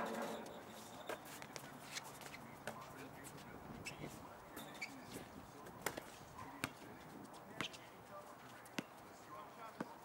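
A basketball hitting the rim with a brief ringing clang at the start, then the ball bouncing on the hard court and feet on the court as sharp, irregular knocks.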